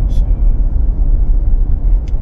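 Steady low rumble of a car heard from inside its cabin, engine and road noise.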